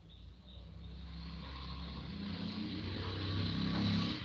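Low droning hum that grows steadily louder, then eases off at the end.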